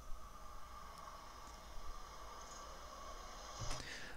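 A faint, steady high-pitched whine made of several fixed tones, with one or two faint clicks. It is the background sound of a video clip being played back, and it stops shortly before the end.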